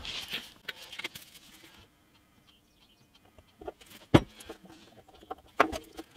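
Small wooden pieces and a glue bottle being handled on a workbench: soft rustling at first, then a few sharp knocks and taps, the loudest about four seconds in.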